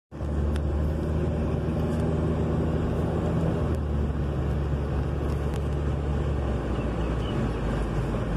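Car driving at a steady speed, heard from inside the cabin: a steady low engine hum with road noise.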